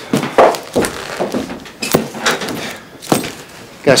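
Handling noise from a black duffel bag on a table: rustling with about six sharp knocks spread across the few seconds, mixed with bits of talk.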